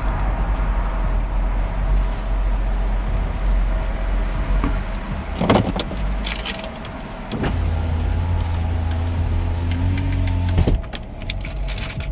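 Car running, heard from inside the cabin as it pulls in and parks: a steady low rumble with a few short rustles and clicks midway. A steady hum joins for about three seconds near the end and cuts off suddenly.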